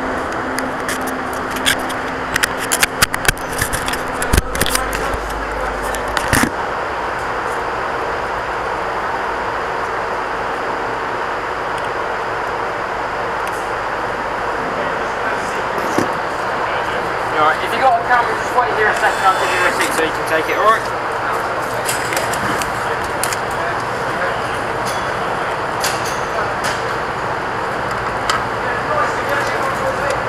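Steady background noise with indistinct voices, and knocks and rubbing from the camera being handled in the first few seconds.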